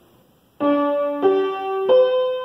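Upright piano playing single notes one at a time, starting about half a second in: three notes about two-thirds of a second apart, each a leap higher than the last. This is a skipwise melody, its notes far apart in pitch.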